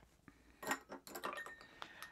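Ice cube clinking against a stemmed glass of rum: a scatter of faint, light clinks.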